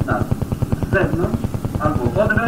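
A voice speaking in short phrases from an old cassette recording, over a rapid, even pulsing throb.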